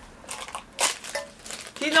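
Thin black plastic bag crinkling as it is handled, in a few short rustles with the loudest a little under a second in.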